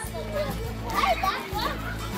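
Several children chattering and calling out at once, over steady background music.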